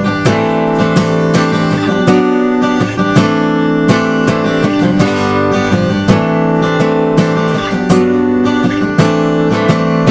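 Steel-string acoustic guitar with a capo, chords strummed and picked in a steady rhythm, each stroke ringing into the next.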